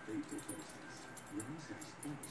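A chihuahua wriggling on its back on carpet to scratch an itch, giving a few faint, soft whimpers.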